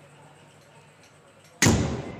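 A single sudden loud hit about one and a half seconds in, with a short fading tail, after a quiet stretch.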